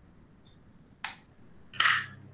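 Faint hiss of an online video-call line, broken by a short sharp click about a second in and a louder noisy burst near the end as another participant's microphone opens, bringing a steady low hum with it.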